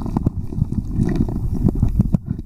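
Muffled underwater churning of water and silt, heard through a submerged camera, with many irregular small knocks and clicks of gravel and stones as the creek bed is fanned by hand.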